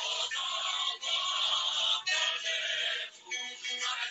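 A recorded song with sung vocals playing, in phrases that break about once a second.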